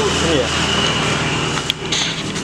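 A steady low machine hum under a constant hiss of background noise, with a short spoken "ya?" near the start and a click near the end.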